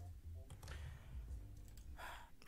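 A few faint clicks over a low, steady hum.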